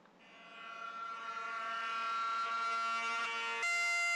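Bagpipes starting up as intro music: a steady droning chord swells in over about two seconds and holds, and a louder, higher note comes in near the end.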